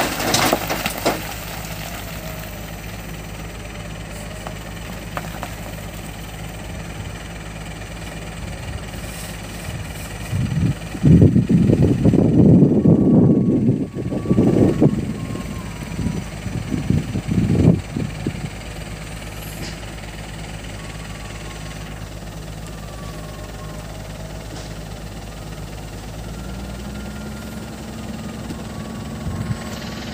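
Diesel engine of a Mitsubishi Colt Diesel dump truck idling steadily. About eleven seconds in comes several seconds of loud rough rustling and knocking from the load, as the tarp is pulled off the rock fill.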